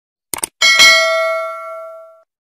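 Subscribe-button animation sound effects: a quick double mouse click, then a single bright bell ding that rings out and fades over about a second and a half.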